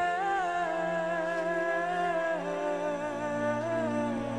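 Soft background music: a slow melody of long held notes, with a lower note coming in about three seconds in.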